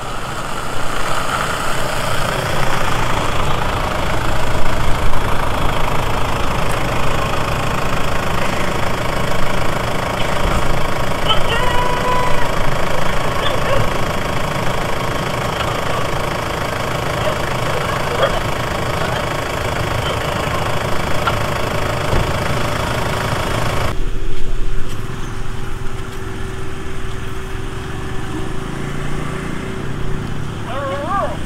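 Vehicle engines running, with the Toyota Land Cruiser Prado and other SUVs driving along a dirt road and then idling. About 24 s in, the sound drops abruptly to a quieter background with a steady low hum.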